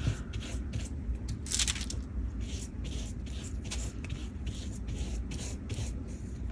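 Bristle brush spreading PVA glue over a paper cut-out, a run of short scratchy strokes about three a second, one stronger stroke about one and a half seconds in.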